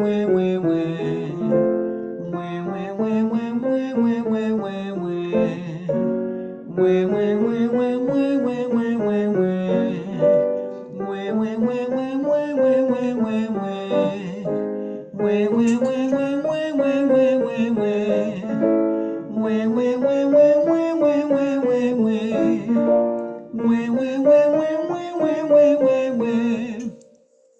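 Piano and singing voices going through a vocal warm-up: a short phrase that rises and falls is repeated several times, each repeat pitched a little higher.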